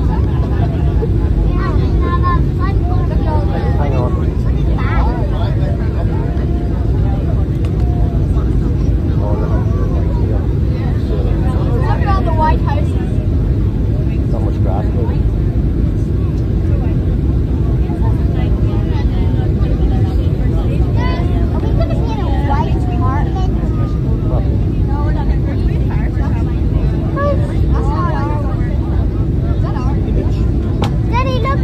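Airliner cabin noise during descent on approach: a loud, steady low rumble of the jet engines and airflow with a constant hum, heard from a window seat. Faint, indistinct voices sit underneath.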